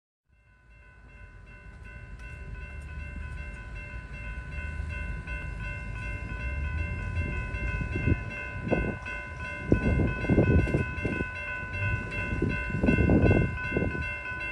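Railroad grade-crossing warning bell ringing steadily over a low rumble that grows louder as a train approaches. Loud, irregular low bursts come in during the second half.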